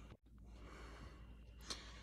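Near silence: faint room noise over a video call's audio, which drops out completely for a moment just after the start, with a short breath near the end.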